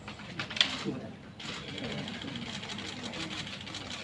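Several people talking indistinctly at once in a small room, with a sharp click about half a second in.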